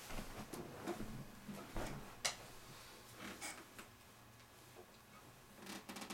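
Faint scattered clicks, knocks and rustles of a person moving about the room and settling onto a couch with an acoustic guitar, with one sharper click a little over two seconds in.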